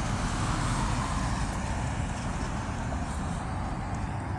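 Steady background rumble and hiss with no distinct events, a pause in the speech.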